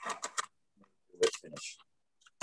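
A quick run of light clicks, then a short rustle about a second in: small tying tools being picked up and handled.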